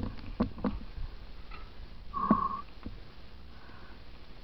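Mountain bikes moving slowly over a rocky trail: several short knocks and clicks of the bikes on the rocks in the first second, then a louder knock with a brief high squeal about two seconds in.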